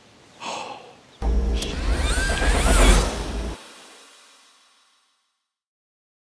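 A brief breathy exhale, then a loud edited sound-effect sting with curling pitch glides that lasts about two seconds and fades out into silence.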